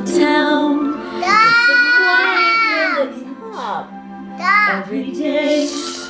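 Orchestral film music holding sustained chords, with a woman singing along in high, drawn-out, gliding notes about a second in and again near five seconds.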